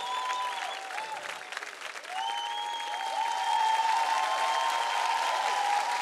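Studio audience applauding. A few long held tones sound over the clapping from about two seconds in.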